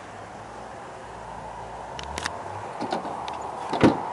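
Steady background hum with a couple of light clicks, then near the end a single sharp clunk as the rear liftgate handle of a 2007 Dodge Durango is pulled and its latch releases.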